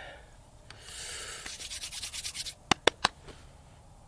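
Scratchy rubbing by hand at a fast, even rate for about a second and a half, then three sharp clicks in quick succession.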